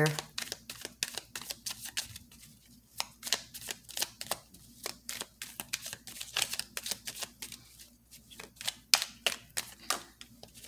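A small tarot deck being shuffled overhand by hand: an irregular run of quick card clicks and slaps, several a second, thinning briefly about two seconds in.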